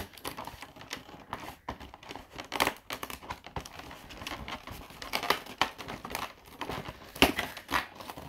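Fingers prying and tearing open a perforated cardboard advent calendar door: irregular crinkling and small tearing crackles, with a few sharper snaps about two and a half, five and seven seconds in.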